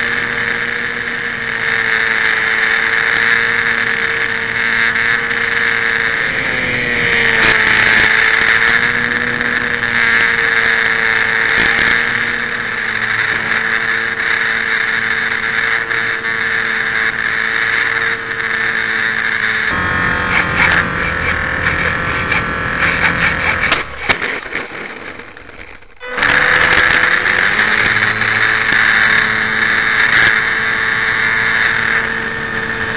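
Onboard sound of a HobbyZone Champ RC plane's small electric motor and propeller: a loud, steady whine that wavers briefly in pitch, broken about twenty seconds in by a stretch of clicking and rattling and a short dip before the whine comes back.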